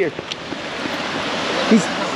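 Ocean surf breaking and washing up the sand, a steady rush of water noise that swells gradually louder.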